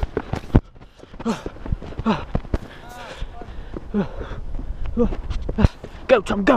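Footsteps scrambling up a steep dirt path, with many short knocks and bumps on the camera and a low rumble underneath. Several brief wordless voice sounds from the climbers come in between.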